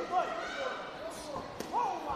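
Men's voices calling out in an arena hall, not the commentary, with one sharp smack about one and a half seconds in.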